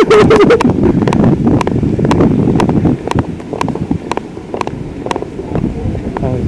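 Wind buffeting a helmet-mounted microphone over the low running of a motorbike moving slowly, with a light click repeating about twice a second.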